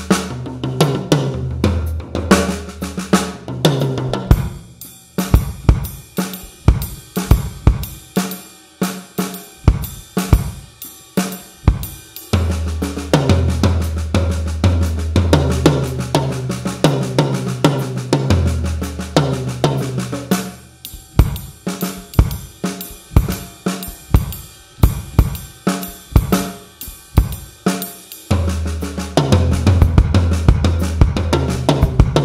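Drum kit played in a swing feel, with triplet-based snare and bass-drum patterns under hi-hat and cymbals. A low bass line from a backing track plays under the drums for the first few seconds, again from about 12 to 21 seconds, and near the end. In the stretches between, the drums play solo breaks with no accompaniment.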